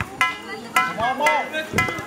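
Several short, high-pitched calls and shouts from players in a basketball game, with a few sharp knocks of a basketball bouncing on concrete.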